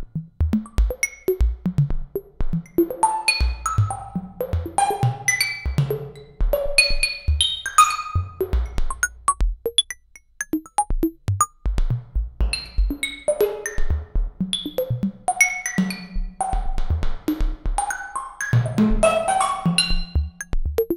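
Electronic music from the Omnisphere software synthesizer: a pattern of short plucked synth notes over a drum-machine beat with low kick thumps. The notes trail off in long reverb tails, heard as the sound of the home-built plate reverb.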